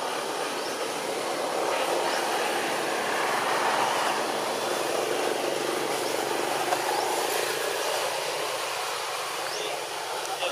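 Steady outdoor hiss with no clear pitch or rhythm, with a few faint, short, high chirps over it.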